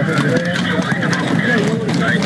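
Hooves of mounted police horses clopping on the street pavement, with many people's voices overlapping over them.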